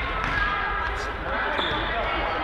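Youth indoor football match in a sports hall: voices calling out over the play, with the ball's kicks and bounces thudding on the hard hall floor and echoing in the large room.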